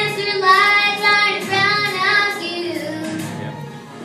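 Young girls singing together into a stage microphone, holding long notes with short breaks between phrases, growing quieter near the end.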